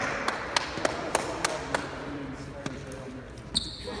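A basketball being dribbled on a hardwood gym floor, sharp bounces about three a second, with low voices murmuring underneath.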